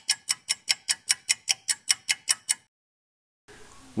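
Clock-ticking sound effect, sharp high ticks about five a second, running as a countdown for the viewer to answer a quiz question; it stops abruptly about two and a half seconds in.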